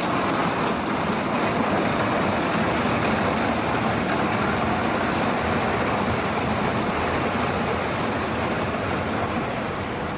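Forklift engine running as it pushes a long line of wheeled plastic bulk bins, the bins rattling as they roll over the pavement, steady throughout.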